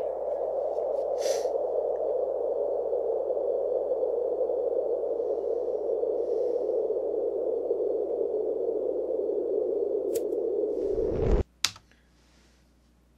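A steady droning hum from the music video's soundtrack after the song stops, with a few faint ticks over it. It cuts off suddenly near the end, and one sharp click follows.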